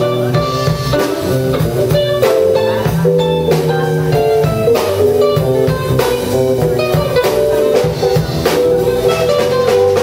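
Live jazz band jamming, with guitar lines over a drum kit keeping time.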